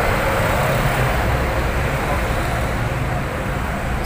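Street traffic noise: cars and motorcycles passing close by, a steady engine rumble with tyre hiss.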